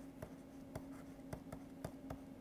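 Faint taps and scratches of a stylus writing on a digital tablet, a light click every fraction of a second as the letters are drawn, over a low steady hum.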